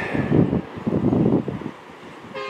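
Wind buffeting the microphone in uneven gusts, dying down near the end.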